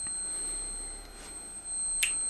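Steady high-pitched squealing from the transformer coils of a TL494-driven MOSFET oscillator, singing at its switching frequency, which is tuned to the resonance of the L2 coil.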